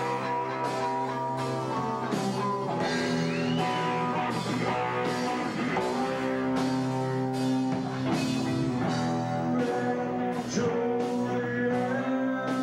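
Stoner rock band playing live: electric guitar holding sustained notes over a steady drum beat of about two strokes a second, with a few bending notes above.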